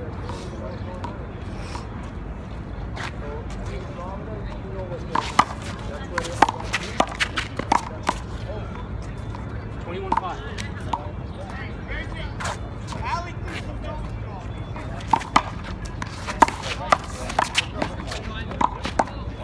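Sharp smacks of a small rubber handball against the concrete wall, pavement and players' hands, in two quick clusters: one about five seconds in and one near the end, when a rally starts. Under them runs a steady low outdoor rumble.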